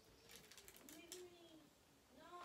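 Near silence: room tone, with a faint voice rising and falling in pitch about a second in.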